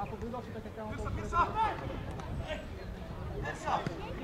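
Men's voices calling out across an outdoor football pitch during play, two brief shouts, about a second in and near the end, over a steady low rumble.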